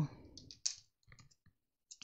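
A few faint, short clicks, spread out over the two seconds with quiet between them.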